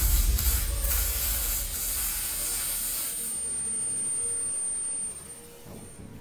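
MIG welder crackling as a bead is laid on a car body panel, with music fading out underneath; the noise cuts off about five seconds in.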